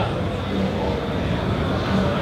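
Steady background din of a busy trade-show hall: an even, low noise with faint distant voices in it.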